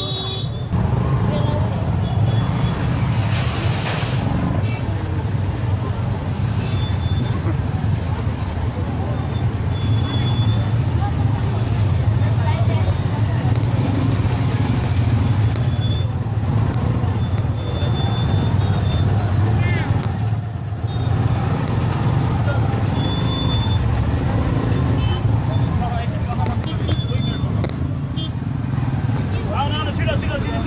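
Busy market street: steady motorcycle and car traffic rumble under crowd chatter, with short high horn toots now and then.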